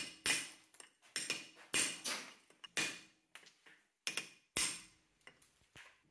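Hammer striking a steel chisel held against a granite blank: about eight sharp blows at uneven intervals, each with a brief metallic ring. The chisel is cutting away stone at an off-center drilled center hole to correct it.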